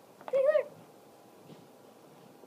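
A cat meows once, a short call that rises and then falls in pitch.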